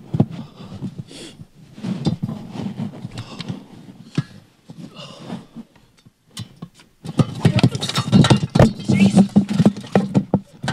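Scuffling, rustling and sharp knocks of close handling noise, with faint bits of voice. It becomes much louder and busier about seven seconds in.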